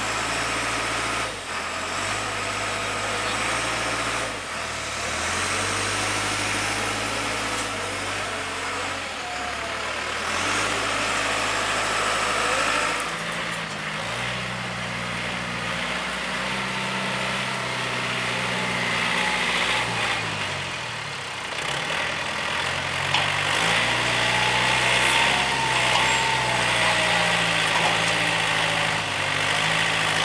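Tractor engine running under load, pulling a lift out of mud. It runs lower at first, rises in pitch about halfway through, dips briefly and comes back up as the throttle changes.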